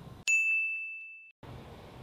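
A single bright ding, a bell-like chime struck once about a quarter second in and fading away over about a second, dropped in as a sound effect.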